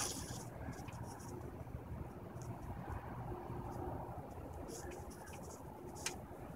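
Faint, steady outdoor background rumble with a few soft rustles and clicks.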